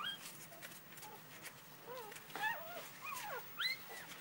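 Shetland sheepdog puppy whimpering: short, high, squeaky cries that rise and fall in pitch, one at the start and a quicker run of four or five in the second half.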